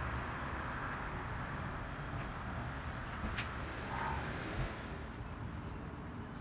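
City street traffic: a steady hum of passing cars, with a sharp click a little past the middle and a short thump soon after.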